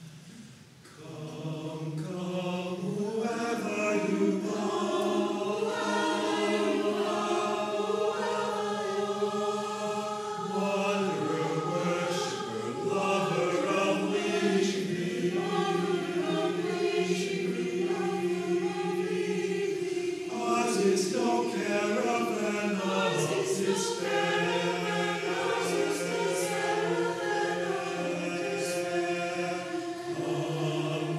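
A mixed choir of men and women singing in harmony, coming in about a second in and swelling over the next few seconds to a full, sustained sound.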